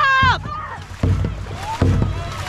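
Dragon boat crew paddling at race pace: a shouted call ends about a third of a second in, followed by low thuds about every 0.7 s, one with each stroke.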